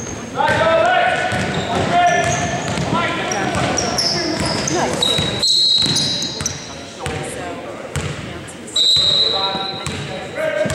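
Indoor basketball game on a hardwood gym floor: voices calling out, a ball being dribbled, and sneakers giving short high squeaks, all echoing in the hall. A held high tone sounds about nine seconds in.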